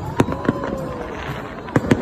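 Aerial firework shells bursting overhead: two sharp bangs in the first half second, then a quick pair of bangs near the end.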